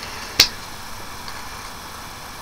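A single short, sharp click about half a second in, then a faint steady hiss of room tone.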